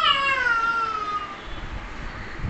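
A toddler's high-pitched, drawn-out squeal that slowly falls in pitch over about a second and a half, followed near the end by a low rumble.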